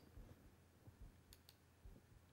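Near silence: room tone, with two brief faint clicks about a second and a half in.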